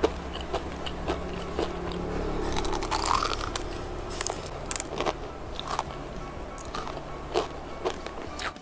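Crispy Milo lace crepe (kuih sarang laba-laba) being bitten and chewed close to the microphone: a run of sharp, brittle crunches.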